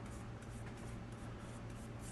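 Soft, faint brush strokes: a paintbrush wet with sealer stroking and dabbing over a carved poplar board, over a steady low hum.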